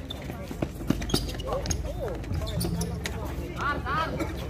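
A basketball being dribbled on a hard outdoor court, a few sharp bounces, with players' shouts and calls.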